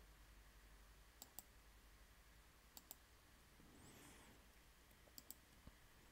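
Near silence with faint computer mouse clicks, several in quick pairs, about a second in, near the middle and near the end.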